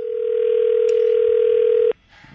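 Telephone ringing tone of an outgoing call, heard over the phone line: one steady tone held for about two seconds, then cutting off suddenly.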